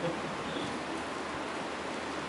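A steady, even hiss of background room noise with no distinct event.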